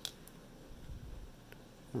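Faint handling of a baseball card in a hard plastic toploader: a short plastic click at the start and a faint tick about a second and a half in, over quiet room tone.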